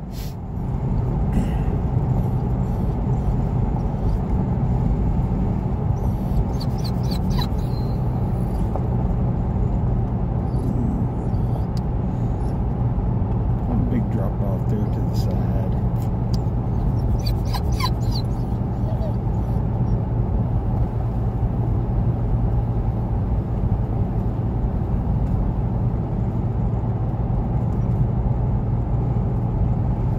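Car cabin noise while driving on an open highway: a steady low drone of engine and tyres on the road. A few faint, brief higher sounds come through about seven and eighteen seconds in.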